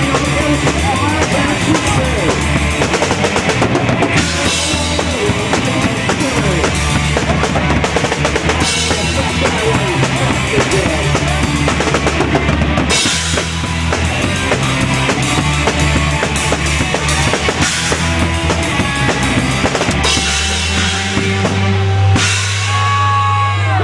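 Live punk band playing loud and fast: drum kit with crashing cymbals over bass and electric guitar. Near the end the cymbals stop and a low held note rings on.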